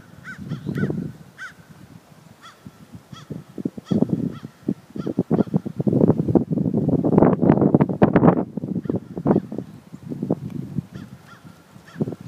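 A flock of birds calling loudly and repeatedly, with many calls overlapping in a dense burst from about six to nine seconds in.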